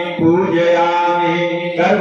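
Chanting of a Hindu mantra during a Shiva puja: a voice holds long, steady notes, with a brief break for a new phrase just after the start and another near the end.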